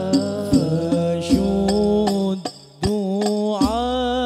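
Al-Banjari-style sholawat: a man sings a long, melismatic devotional line, with sharp percussion strikes marking the beat. The music drops out briefly about two and a half seconds in, then the voice comes back in.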